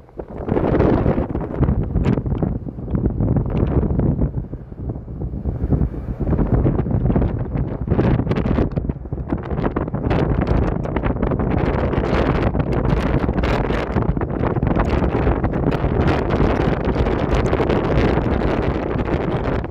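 Wind buffeting the microphone in gusts: a loud, rough low rumble that eases a little about four to five seconds in, then blows steadily on.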